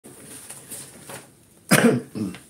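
A man coughs once, a short loud burst near the end, after a moment of faint low sound.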